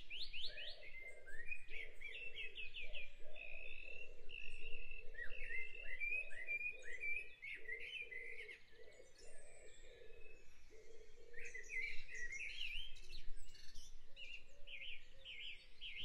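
A recorded dawn chorus: several birds singing at once in a dense run of quick chirps, trills and rising whistles, with a lower note pulsing steadily underneath.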